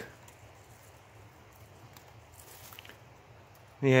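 Quiet outdoor background with a couple of faint ticks about two and a half seconds in; a man's voice starts near the end.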